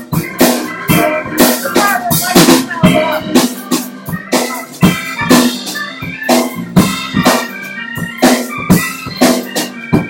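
Live rock/blues band playing with no singing: drum kit keeping a steady beat, with strong hits about twice a second, under electric bass, electric guitar and sustained organ-like tones.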